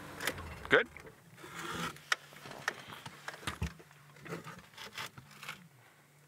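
Scattered clicks, knocks and small rustles of handling inside an open safari vehicle, over a low steady hum.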